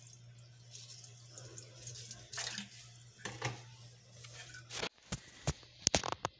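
Faint water dripping and sloshing as a wetted ceramic tile is handled and set onto a wet mortar bed, over a low steady hum. A few sharp knocks come in the last second.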